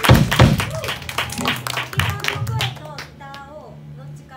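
A live rock band ends a song with a last loud chord and drum hits in the first half-second, and the sound dies away. Scattered audience clapping and a few voices follow over a low steady hum.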